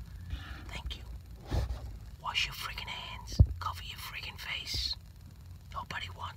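A man whispering in short breathy phrases over a low steady hum, with one sharp click about three and a half seconds in.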